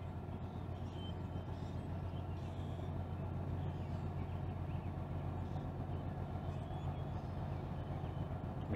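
Steady low drone of a Great Lakes freighter's engines as the ship gets underway out of the lock; there is no horn.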